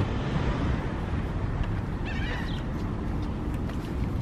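Steady low outdoor rumble with wind on the microphone. A few faint clicks and knocks come from a folded stroller's frame and wheels as it is pushed into a car trunk.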